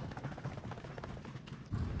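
Footsteps going down a staircase at a brisk, even pace.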